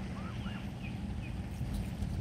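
Canada goose gosling giving a few faint, short, high peeps over a steady low rumble.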